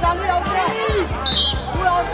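A handball bouncing on a hard outdoor court, short knocks about every half second, among players' shouts and background music. A brief high whistle sounds a little past the middle.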